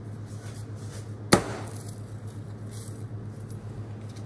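Pizza wheel cutting a baked Neapolitan pizza on a wooden peel: a single sharp knock a little over a second in as the blade meets the crust and board, then faint crackling from the charred crust as the wheel rolls through.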